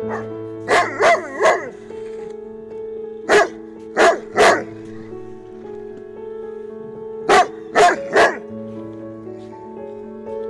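A Bernese Mountain Dog barking in short groups, nine barks in all: three in quick succession about a second in, one, then two, then three more near the end. Background music with held notes plays underneath.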